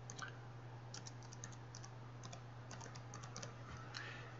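Faint computer-keyboard typing: several short runs of quick key taps as a name, "color swatches", is typed in. A steady low electrical hum runs underneath.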